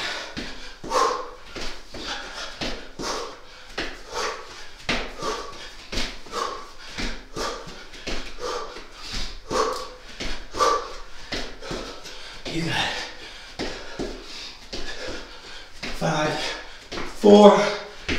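A man breathing hard and grunting in time with a fast exercise, about two sharp breaths a second, mixed with footfalls; the grunts get louder near the end.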